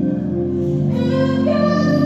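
A woman singing a gospel song live into a microphone over band accompaniment, taking up a long held note about a second in.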